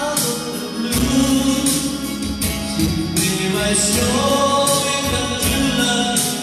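A man singing a slow ballad into a microphone over a karaoke backing track with a steady beat, his held notes amplified through a loudspeaker; his pitch steps up a few seconds in.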